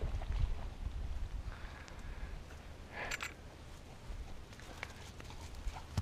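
Light wind rumble on the microphone with soft, irregular footfalls on dry ground and a short brighter rustle about three seconds in.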